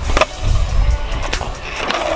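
Skateboard clacking on concrete during a flat-ground flip trick: two sharp clacks about a second apart as the board strikes the ground.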